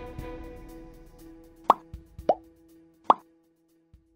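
Background music with a held chord slowly fading out, overlaid by three short pop sound effects, each a quick upward blip, starting a little before halfway; these pops are the loudest sounds.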